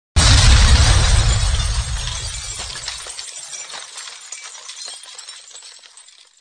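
Intro sound effect of glass shattering: a sudden crash with a deep boom, then a tinkling, crackling tail of debris that fades away over about six seconds.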